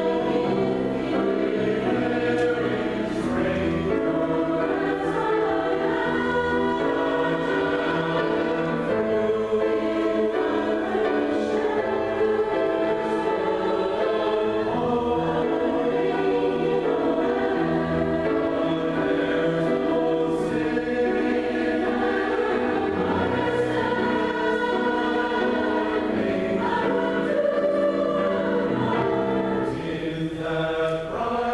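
Mixed-voice church choir singing a choral piece, with sustained chords moving from note to note at an even loudness.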